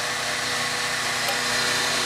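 Steady machine noise: an even hiss over a faint low hum, unchanging throughout.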